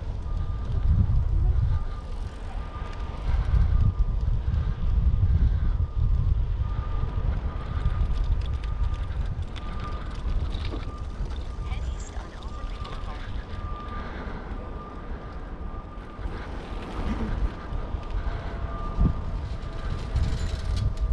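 Wind buffeting the microphone of a moving bicycle ride, coming in gusts, with a faint steady high whine underneath.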